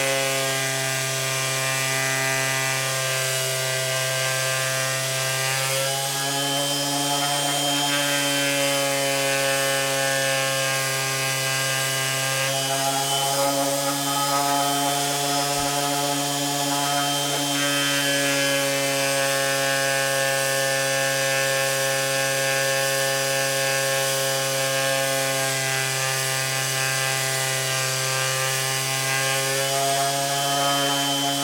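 Electric random-orbit sander running steadily as it sands wood, a continuous motor hum whose pitch shifts slightly a few times.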